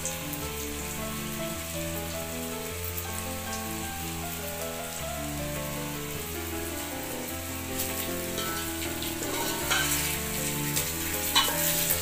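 Fenugreek muthiya dumplings frying in oil in an aluminium pot, with a steady sizzle. Near the end a spoon clicks against the pot as stirring begins.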